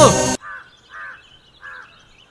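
A man's shout over background music cuts off suddenly, then a bird calls three times, short calls about half a second apart.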